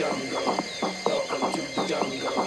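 Tech house music: a busy, evenly repeating percussion pattern, with faint gliding high tones above it.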